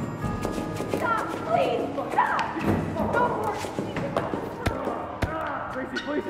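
Short film soundtrack: a run of sharp thuds and knocks mixed with an indistinct voice and music.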